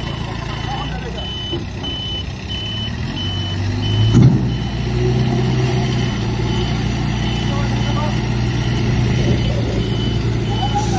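Backhoe loader's reversing alarm beeping at just under two beeps a second over its diesel engine. About four seconds in there is a thud as the engine revs up, and the engine then runs louder under load.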